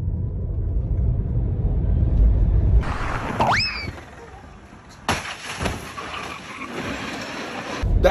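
Low rumble of road and tyre noise inside an electric Tesla's cabin as it accelerates hard. About three seconds in the sound cuts abruptly to something else: a quick rising whistle, a quieter second, then a sudden loud noise about five seconds in that carries on as a noisy din.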